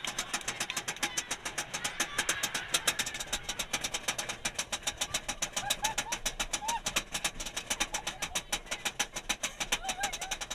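Roller coaster train climbing the lift hill: the anti-rollback ratchet clicks rapidly and evenly, several clicks a second, with faint voices of riders.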